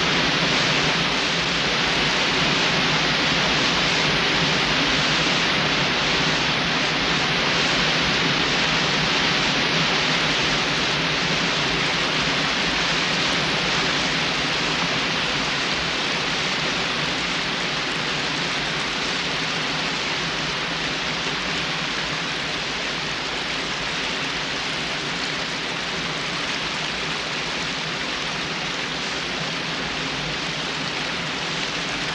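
Large waterfall pouring in a steady, dense rush of falling water that eases slightly in loudness later on.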